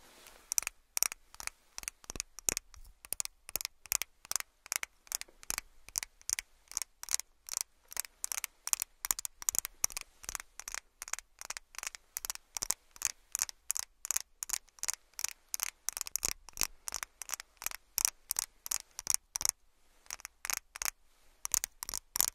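Rapid, sharp plastic clicks and taps, about three a second, from a clear plastic makeup stick handled and tapped close to the microphone, with a couple of short pauses near the end.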